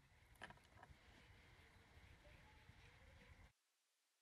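Near silence: faint room tone with a soft click about half a second in, cutting to dead silence about three and a half seconds in.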